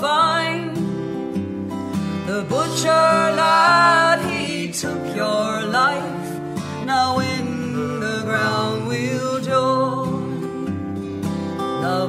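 A folk ballad performed live: a steel-string acoustic guitar is played under a woman's sung melody, with no clear words.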